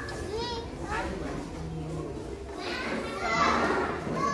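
Young children's voices chattering and calling out, growing louder and busier about three seconds in.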